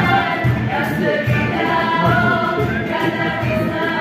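A small group of young women singing a song together, over a steady low beat from a cajón.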